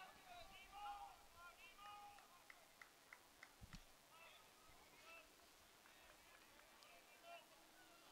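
Near silence: faint, distant voices calling from the field in the first couple of seconds, then a few faint sharp clicks and a low thump near the middle.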